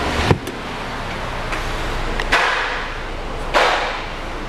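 A sharp knock just after the start, then two swells of rustling and scraping, handling noise from someone moving about in a car's doorway, over a steady low hum.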